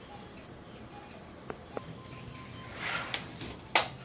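Kitchen handling sounds over quiet room tone: two light clicks of utensils or cookware, a soft rustle, then one sharper click near the end.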